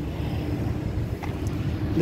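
Steady low rumble of outdoor background noise, with a faint click a little past the middle.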